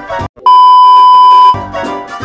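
Background music drops out for a moment, then a loud steady beep on a single high tone sounds for about a second, a censor-style bleep edited into the soundtrack, before the music comes back.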